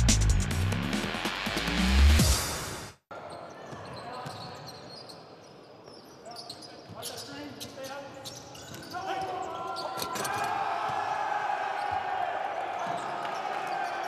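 A short electronic intro sting with a rising sweep, cutting off abruptly about three seconds in; then live basketball game sound: a ball dribbled on a hardwood court, with voices growing louder from about nine seconds in.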